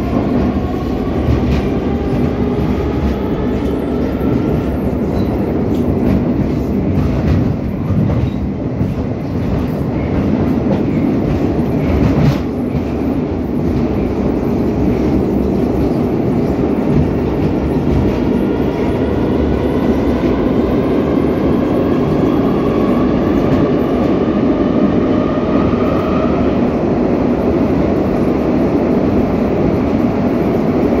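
Metro train car running through the tunnel, heard from inside: a steady, loud rumble of wheels on rail. The electric traction drive's whine rises in pitch near the start as the train accelerates, rises again from about two-thirds of the way through, then cuts off. A single knock comes near the middle.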